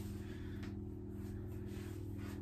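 Quiet room tone with a faint, steady low hum and no distinct event.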